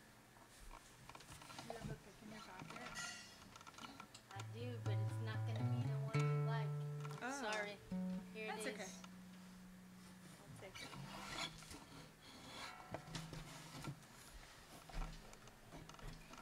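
Scattered quiet acoustic guitar notes and a few sustained plucked upright bass notes in the middle, with faint murmured talk.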